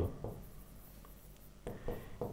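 A pen writing on an interactive display board, faint quiet strokes with a few soft taps and scratches near the end.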